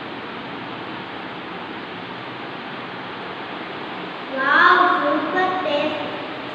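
Steady background hiss. About four seconds in, a high voice, a child's, speaks or exclaims briefly.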